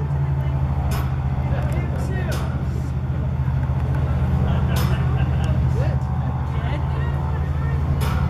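Steady low engine hum, with voices chattering and a few sharp clicks.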